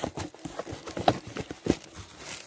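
A string of irregular sharp knocks and clicks from objects being handled, the loudest about a second in and again shortly after.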